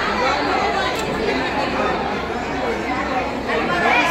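Speech only: a man talking into microphones, with other people's voices behind him.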